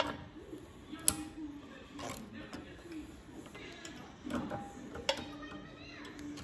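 Scattered sharp clicks and taps of steel needle-nose pliers against the small-engine carburetor, a few times over several seconds, as the rubber fuel line is worked off its fitting.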